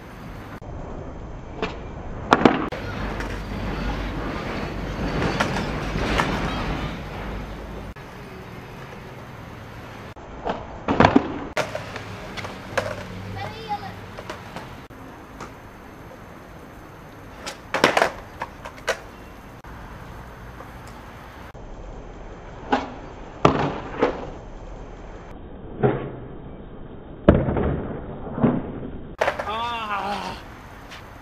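Skateboard on concrete during repeated 360 flip attempts: the wheels roll with a rumble that is strongest over the first several seconds. Sharp clacks of the board's tail and wheels hitting the ground come every few seconds and are the loudest sounds.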